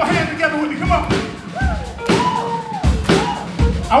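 Live soul band: a drum kit beat with a kick drum about every 0.8 seconds under sung vocal lines.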